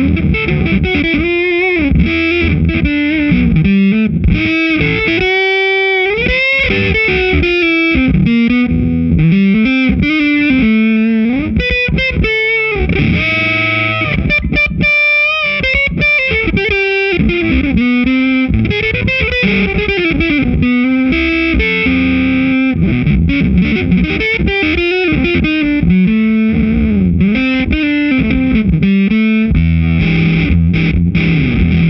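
Electric guitar played through a Supro Fuzz, a germanium-transistor fuzz pedal: lead lines with frequent string bends and some held notes in a thick fuzz tone.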